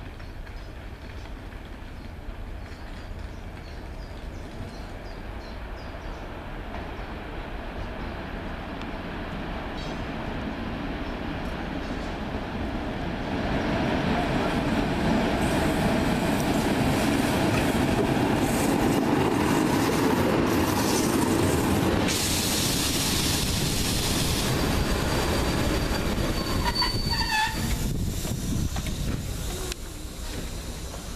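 ČD class 163 electric locomotive arriving with its train of coaches, the rumble of motors and wheels growing louder until it passes close about halfway through. Near the end, high-pitched wheel squeal as the train slows into the station.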